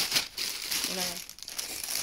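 Thin plastic shopping bags rustling and crinkling as they are handled and opened, loudest at the very start.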